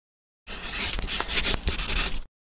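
A scratchy, rasping rubbing noise with quick crackles, starting about half a second in and cutting off abruptly.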